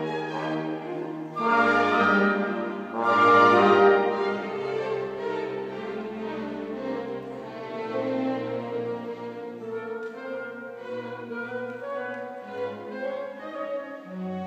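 A small orchestra of strings with winds playing classical music: two loud full chords about one and a half and three seconds in, then a softer, moving passage.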